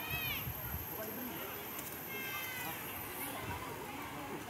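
Two high-pitched calls from swimmers, one right at the start with a rise and fall in pitch and a flatter one about two seconds in, over a steady background murmur of distant voices.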